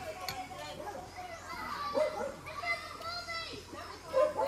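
Background voices: children playing and people chattering, with one short click early on.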